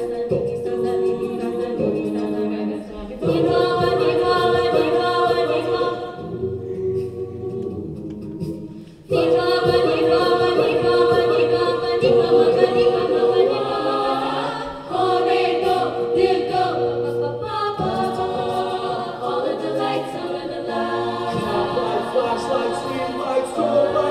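Mixed-voice a cappella group singing sustained chords in several parts into microphones. The sound thins and drops in level from about six seconds in, then the full ensemble comes back in loudly at about nine seconds.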